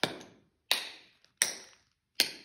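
Tap shoes striking a hard floor: three sharp, ringing taps evenly spaced about three-quarters of a second apart, the single steps of a cramp roll (toe, toe, heel, heel) done slowly.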